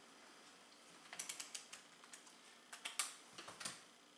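Light clicks and taps of multimeter test leads and probes being handled and connected, in two quick flurries, about a second in and again around three seconds in.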